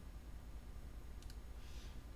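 Two quick, faint clicks about a second in, then a short breath of air, over a steady low hum.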